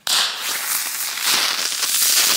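3D-printed airsoft smoke grenade loaded with chloroacetophenone tear gas igniting: a loud, rough hiss that starts abruptly and stays steady as the burning charge vents smoke.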